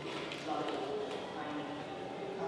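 Indistinct murmur of voices in a gallery, with a few light taps like footsteps on a wooden floor.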